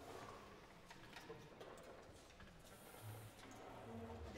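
Near silence in a hall: faint scattered clicks and rustling from a seated wind band handling its instruments and music between pieces.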